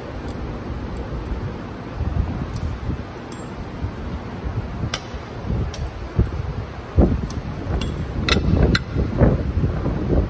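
Scattered metallic clicks and clinks as a wrench works the turbocharger's mounting bolts on a diesel engine, with a sharp knock about seven seconds in the loudest. A low rumble of handling noise runs underneath.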